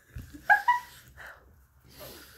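Stifled laughter: two short, high-pitched squeals about half a second in, then a fainter breathy laugh.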